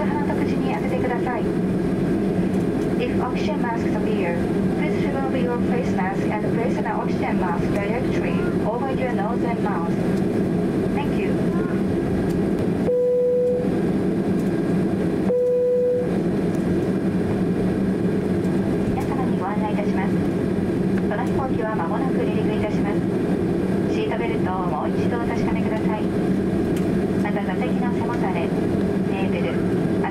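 Inside the cabin of a taxiing Boeing 767-300: a steady engine and cabin hum under a flight attendant's announcement over the PA. About halfway through, the cabin chime sounds twice, two single steady tones a couple of seconds apart.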